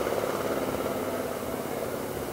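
An engine idling with a steady hum that eases slightly in level.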